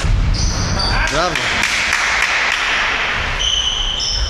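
Table tennis ball clicking off bats and the table during a rally in a large gym hall, over a steady background of hall noise and voices, with a short shout about a second in.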